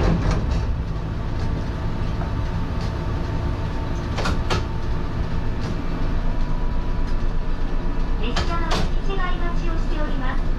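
Echizen Railway MC6001 electric railcar standing at a station, its onboard equipment giving a steady hum with a few sharp clicks. About six seconds in, a fast, even pulsing of about four beats a second joins in.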